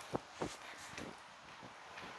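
A few soft footsteps on a sidewalk, two distinct ones in the first half second, over a faint steady hiss of wind.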